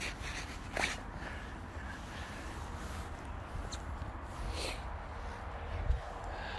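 A boxer dog's short snorts and breaths through the nose, with a tennis ball in its mouth, as it lies on its back having its belly rubbed; the clearest come about a second in and again about four and a half seconds in.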